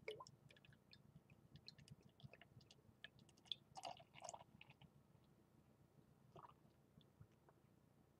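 Faint sound of beer being poured from a glass bottle into a glass mug: small crackling splashes and fizz as the foamy head rises, with two louder gurgles about four seconds in, thinning out in the second half.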